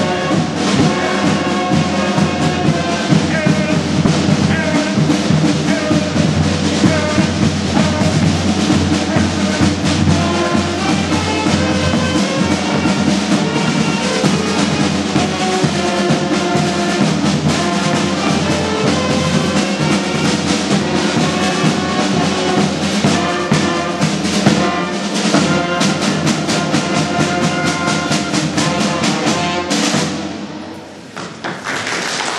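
Marching band playing a march, horns and saxophones over snare and bass drums. The drum strokes come thicker over the last few seconds, and the music stops suddenly at the end.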